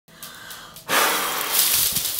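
A woman blowing a long, hard breath across her cupped hands to blow out confetti; a loud hiss of air that begins about a second in.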